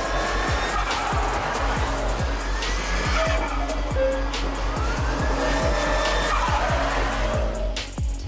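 Hip-hop music with a heavy bass beat over a car's tyres squealing and engine running, the squeal rising and falling in long sweeps. The car is an SR20DET-swapped Nissan S13.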